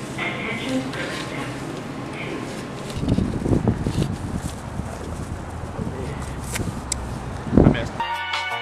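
Indistinct voices and shop background noise, then, from about three seconds in, outdoor noise with a heavy low rumble, and a short loud burst just before the end.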